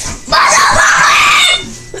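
A child screaming loudly: one harsh, raspy scream of a little over a second, during rough play-fighting.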